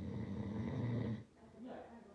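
A person's voice: one drawn-out, breathy sound lasting a little over a second, then brief voiced fragments near the end.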